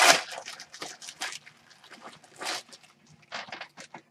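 Thin plastic packaging bag crinkling and rustling in short, irregular bursts as a folded T-shirt is pulled out of it.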